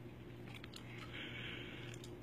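Quiet background: a steady low hum and hiss with a few faint clicks and no clear event.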